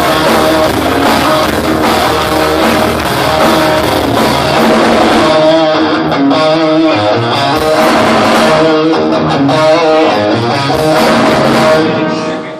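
Heavy metal band playing live: distorted electric guitars over bass and drums. About five seconds in, the deep bottom end drops out, leaving mostly electric guitar playing held notes.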